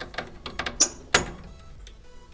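A few small clicks and a sharper snap about a second in as a wire connector is pulled off the line terminal of a furnace control board.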